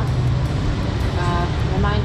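Steady low rumble of background noise, with a voice talking briefly near the end.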